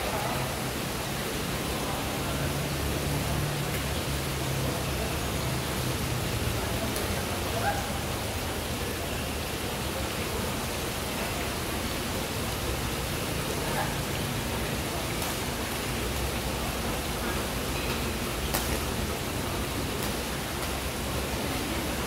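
Steady hiss of a large indoor badminton hall's ambience, with a low hum underneath and a few sharp clicks of rackets striking a shuttlecock, the clearest near the end.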